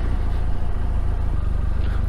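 Touring motorcycle riding at low speed on a wet road, heard from the rider's seat: a steady low engine drone under a haze of wind and tyre noise.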